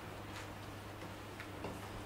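Quiet room tone with a steady low hum and a few faint, irregularly spaced clicks.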